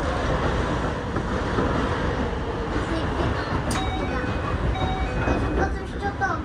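Steady rumble and hiss of trains at a station platform, heard from inside the front cab of a Keio 8000 series train, with a few short electronic tones in the second half.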